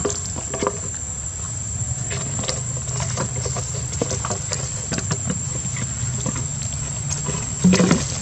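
Juvenile macaques scuffling over an empty plastic water bottle: scattered crinkles, taps and scrabbling on stone, with one louder short burst near the end.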